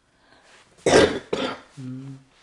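A person coughing twice, two short bursts about half a second apart, followed by a brief low voiced sound near the end.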